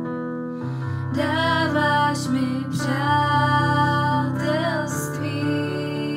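Worship song in Czech: a singing voice over a soft instrumental accompaniment, the voice coming in about a second in and holding long, wavering notes.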